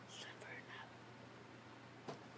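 Faint whispering in the first second, then near silence with a steady low hum.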